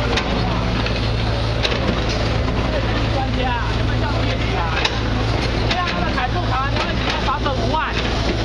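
Truck-mounted crane's engine running steadily, with several people talking over it.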